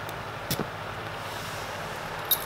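A single sharp metallic click about half a second in as a steel padlock's shackle is pushed shut, over a steady background hum.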